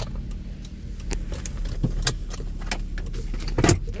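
Keys hanging from a parked car's ignition clinking against each other several times, loudest just before the end, over the car's engine idling with a low steady hum.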